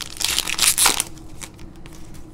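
Foil trading-card pack wrapper crinkling as it is pulled open off the cards, loudest in the first second, then quieter handling with a few light clicks.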